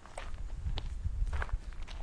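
Footsteps on loose gravel, four steps about half a second apart, over a low rumble.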